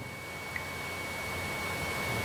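Pause in the talk on a recorded radio broadcast: a steady background hiss with a faint, thin, high steady tone running through it.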